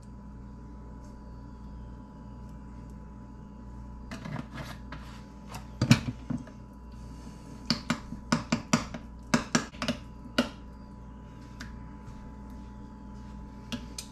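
A spoon clinking and scraping against a small bowl as a bean-and-salsa burrito filling is stirred: a run of irregular sharp clicks starting about four seconds in and stopping about ten seconds in, over a low steady room hum.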